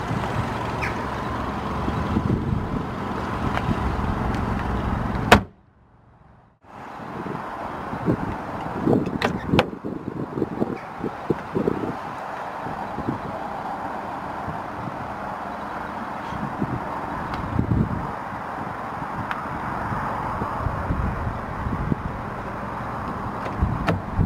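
Car bonnet lowered and shut about five seconds in with a single sharp bang, the loudest sound here. Steady outdoor background noise with scattered handling knocks runs around it.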